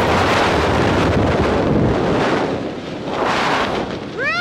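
Rushing air buffeting the camera's microphone under an open tandem parachute: loud, steady wind noise that eases a little past the middle and swells again near the end.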